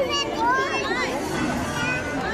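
Crowd chatter: many voices talking and calling over one another at once, with no one voice standing out.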